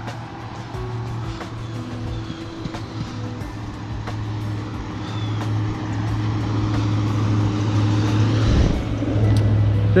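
A car passing on the road, its tyre and engine noise building steadily and peaking near the end, over background music with a steady low note.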